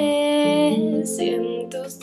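A woman singing a long held note over acoustic guitar accompaniment, with a short break about a second in before the next sung phrase.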